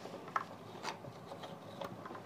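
A few faint clicks and scrapes as a brass plug key is pushed into the 1 ohm gap of a plug-type resistance box, shorting out that coil.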